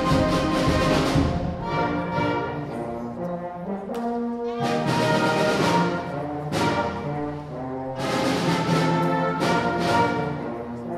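School concert band playing a loud, brass-led passage: sustained chords punctuated by sharp accented hits with cymbal and drum strikes. There is a brief thinning just before the middle, then the full band comes back in strongly, and again near the end.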